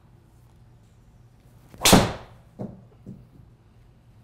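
A PING G410 LST driver strikes a golf ball off a tee with one loud, sharp crack about two seconds in, merging with the ball smacking into the simulator's impact screen. Two much fainter knocks follow within the next second.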